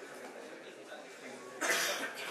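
A single short cough about one and a half seconds in, over faint murmuring voices in the room.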